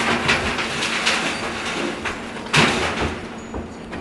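Plasma-cutter dust pan tipped on its chains, dumping fine plasma dust and steel slag onto the floor in a rushing, rattling pour. Two loud crashes stand out, one as the pour starts and one about two and a half seconds in.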